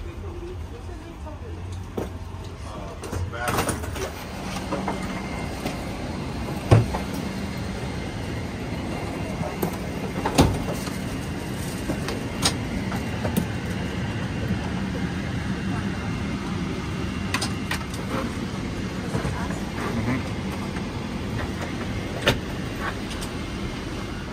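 Aircraft boarding ambience: a steady low hum of cabin air and ventilation, with other passengers' voices and a few sharp knocks, the loudest about seven seconds in and again about ten and a half seconds in.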